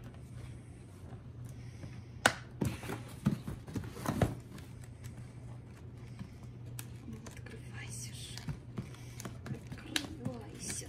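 A cardboard gift box being handled and turned over on a wooden floor, with several sharp knocks and taps about two to four seconds in, over a steady low hum.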